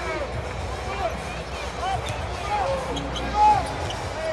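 Basketball being dribbled on a hardwood arena court under steady crowd noise, with scattered short squeaking tones and a louder moment about three and a half seconds in.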